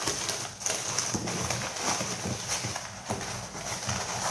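Crumpled kraft packing paper rustling and crinkling as it is pulled about inside a cardboard box: a dense, irregular run of crackles.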